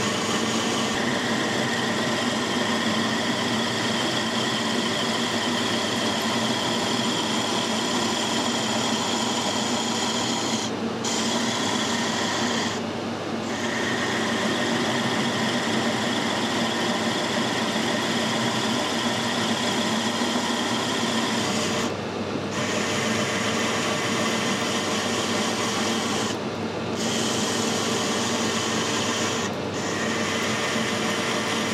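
Metal lathe running with a ball-turning tool (a modified boring head fitted with a sharpened broken end mill) cutting a domed rivet-style head on a bolt: a steady scraping cut over the lathe's hum. The higher part of the cutting noise drops out briefly about five times.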